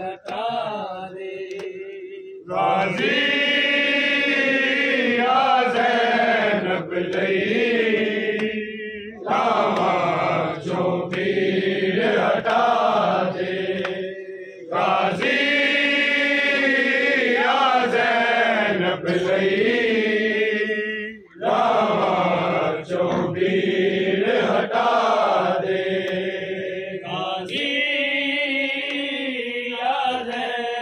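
Men's voices chanting a mourning lament (noha) together in long melodic phrases of several seconds each, with brief pauses between them.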